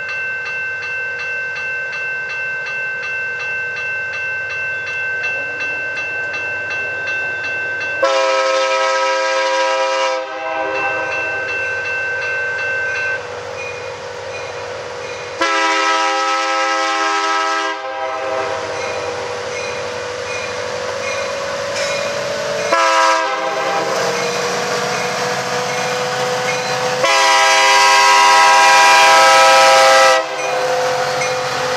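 BNSF diesel locomotive's air horn blowing the grade-crossing signal: two long blasts, a short one, then a final long one, the last the loudest. Under it, a crossing warning bell rings steadily and the approaching train's diesel engines and wheels grow louder.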